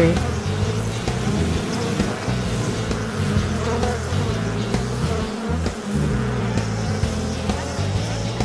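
Bumblebee buzzing sound effect, a steady drone, with background music beneath it.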